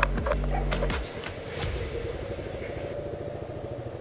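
Motorcycle engine idling with a steady, even low throb. A voice and a few clicks come in the first second.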